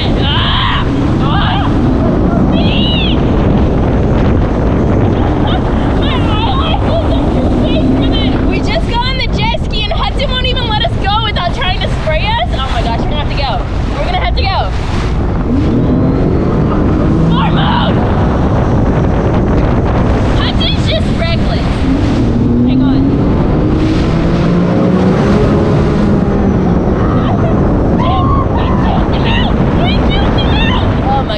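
A Sea-Doo personal watercraft running at speed, its engine note rising and falling, with water spray rushing past the hull.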